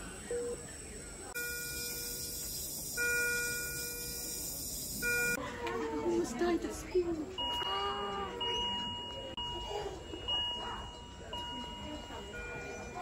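Steady electronic alarm tones from hospital bedside equipment, each pitch held for several seconds with short breaks, with voices in the background.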